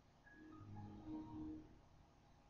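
Windows XP system chime as the computer logs off to restart: a short run of a few notes, stepping down in pitch, lasting about a second and a half and played faintly.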